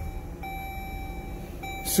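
2018 Dodge Journey's 3.6-litre V6 idling just after a push-button start, with a steady electronic beep tone sounding over it, broken by a couple of short gaps.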